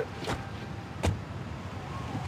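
Low, steady street traffic rumble with two short knocks, the louder one about a second in.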